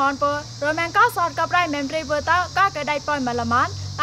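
A woman speaking steadily, her pitch rising and falling sharply on each syllable, with a faint steady low hum underneath.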